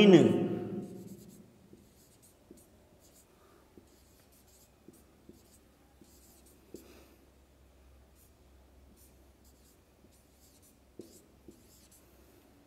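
Marker pen writing on a whiteboard: faint, scattered short scratches and taps of the pen strokes.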